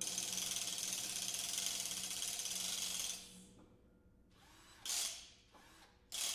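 A fast mechanical ratcheting noise played as a percussion effect. It runs for about three seconds and cuts off, and a short burst of the same clicking follows near the end.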